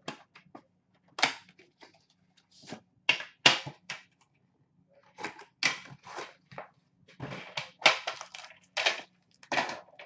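Hockey card tins and their packaging being handled: an irregular run of clacks, knocks and short rustles as metal tins are set down and unwrapped.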